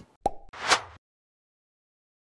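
Outro logo sound effect: a sharp pop, then a short whoosh that swells and cuts off about a second in.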